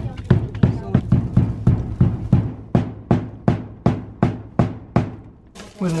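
Claw hammer driving a nail into timber roof framing, a steady run of sharp blows at about three a second that stops shortly before the end.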